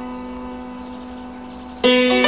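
Hammered dulcimer strings ringing on and slowly fading after a struck chord, then a fresh, louder run of hammered notes starts just before the end.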